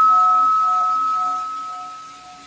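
A single altar bell (sanctus bell) struck once at the elevation of the consecrated host, its clear ringing tone slowly fading.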